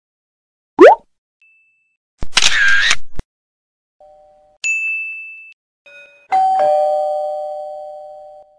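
A run of separate short sound effects: a quick rising glide, a noisy burst about a second long, then a single bright 'ting' chime that fades out. It ends with a two-note ding-dong doorbell chime, high note then low, ringing out slowly.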